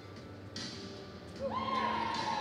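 A horse whinnying: a single long, high call starting about one and a half seconds in and sliding slowly down in pitch, over hooves scuffing in the arena dirt.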